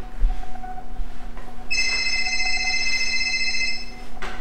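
A steady high electronic tone, several pitches sounding together, starts suddenly about two seconds in and holds for about two seconds before cutting off, over a low steady hum.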